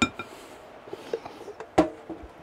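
A spoon knocked against the rim of a glass mixing bowl to shake off mayonnaise: a few quick ringing taps at the start, then scattered knocks, with a louder knock near the end.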